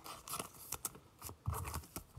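Faint rustling and crinkling of a clear plastic card sleeve as a Pokémon card is slipped into it, with light scattered ticks and a soft bump near the end.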